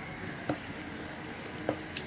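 Wire whisk stirring a thick rice-flour and jaggery batter in a ceramic bowl, soft and wet, with two light clicks of the whisk against the bowl, about half a second in and near the end.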